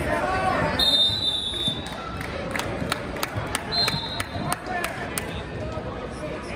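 Referee's whistle blown twice at the fall, a high steady tone about a second long and then a shorter one about three seconds later. Crowd chatter and a few sharp claps run around it.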